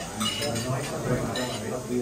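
Plates and cutlery clinking as dishes are served and eaten from, with two clearer clinks, one near the start and one about halfway through, over people talking at the table.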